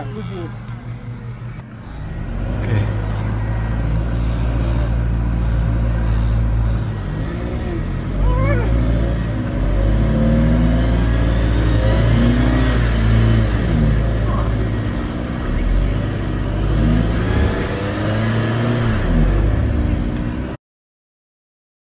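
Vehicle engine revving under load, rising and falling repeatedly, as it tows a van stuck in mud out on a tow rope. The engine comes up sharply about two seconds in.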